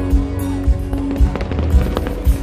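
Aerial fireworks crackling and popping, thickest in the second half, over a live band playing loudly through a large concert sound system with a steady kick-drum beat about twice a second.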